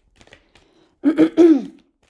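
A woman's brief wordless vocal sound, like a throat clear, about a second in, the loudest thing here. Before it, faint soft ticks of a tarot deck being shuffled in the hands.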